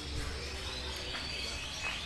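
Caged birds chirping, with several short calls and a falling call near the end, over a steady low hum.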